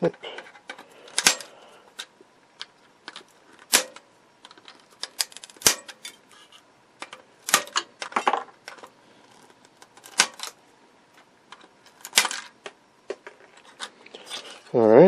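Small diagonal cutters snipping through the pins of an old, brittle plastic octal tube socket on a circuit board, breaking it apart. About seven sharp snaps come a second or two apart, with fainter clicks of broken plastic bits in between.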